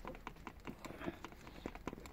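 Small plastic paint jar and paintbrush being handled, giving light, irregular clicks and taps, several a second.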